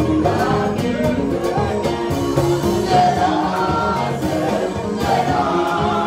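French-language gospel song: voices singing together over band backing with a steady beat.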